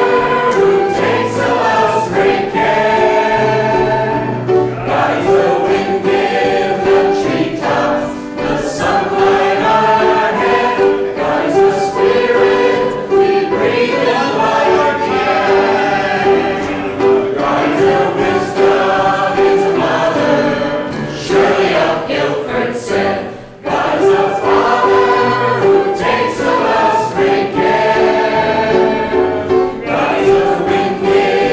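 Mixed choir of men's and women's voices singing together in long held notes. There is one short break between phrases about two-thirds of the way through.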